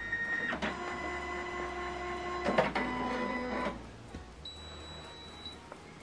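Canon i-SENSYS MF651Cw's flatbed scanner running a scan: the scan head's motor whines with several steady tones. There is a click and a change in pitch about two and a half seconds in, and the motor stops a little past halfway.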